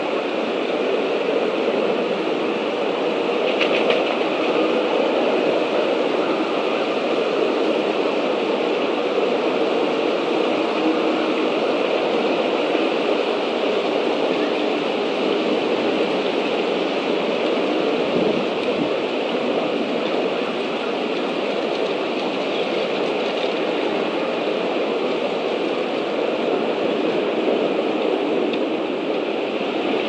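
Steady, loud outdoor noise picked up by a nest-camera microphone, even throughout, with no distinct calls or knocks.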